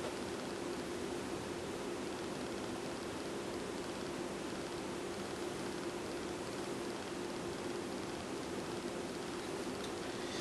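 Steady background hiss with a faint low hum and no distinct sounds: room tone.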